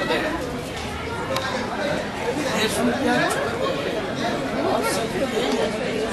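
Several people talking over one another: overlapping chatter.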